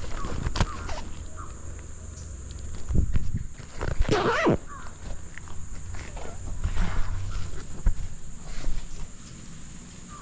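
Camera handling and rustling as a man climbs into a rope hammock, with wind-like rumble on the microphone and small knocks. A short, loud, strained sound comes about four seconds in.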